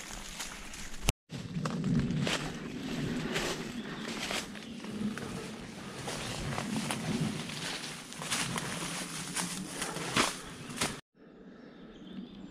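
Footsteps with leaves and branches rustling, brushing and snapping as someone forces a way through dense undergrowth. The sound is full of short crackles. It cuts out for a moment about a second in and again near the end.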